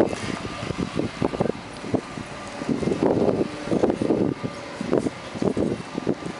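Riding noise on a bicycle-mounted camera: uneven wind buffeting and jolting on the microphone, with car traffic on the street.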